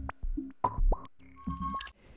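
Electronic logo sting: a sparse run of short synth blips, several swooping up in pitch, with a thin high chord near the end.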